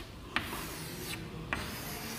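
Chalk rubbing quietly on a chalkboard as curved lines are drawn, with two short clicks, about a third of a second in and again a little past halfway.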